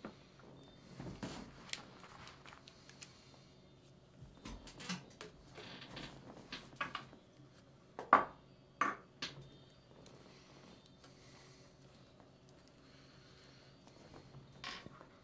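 Quiet room with scattered light clicks and knocks of small objects being handled, the loudest a sharp knock about eight seconds in, followed by two smaller ones.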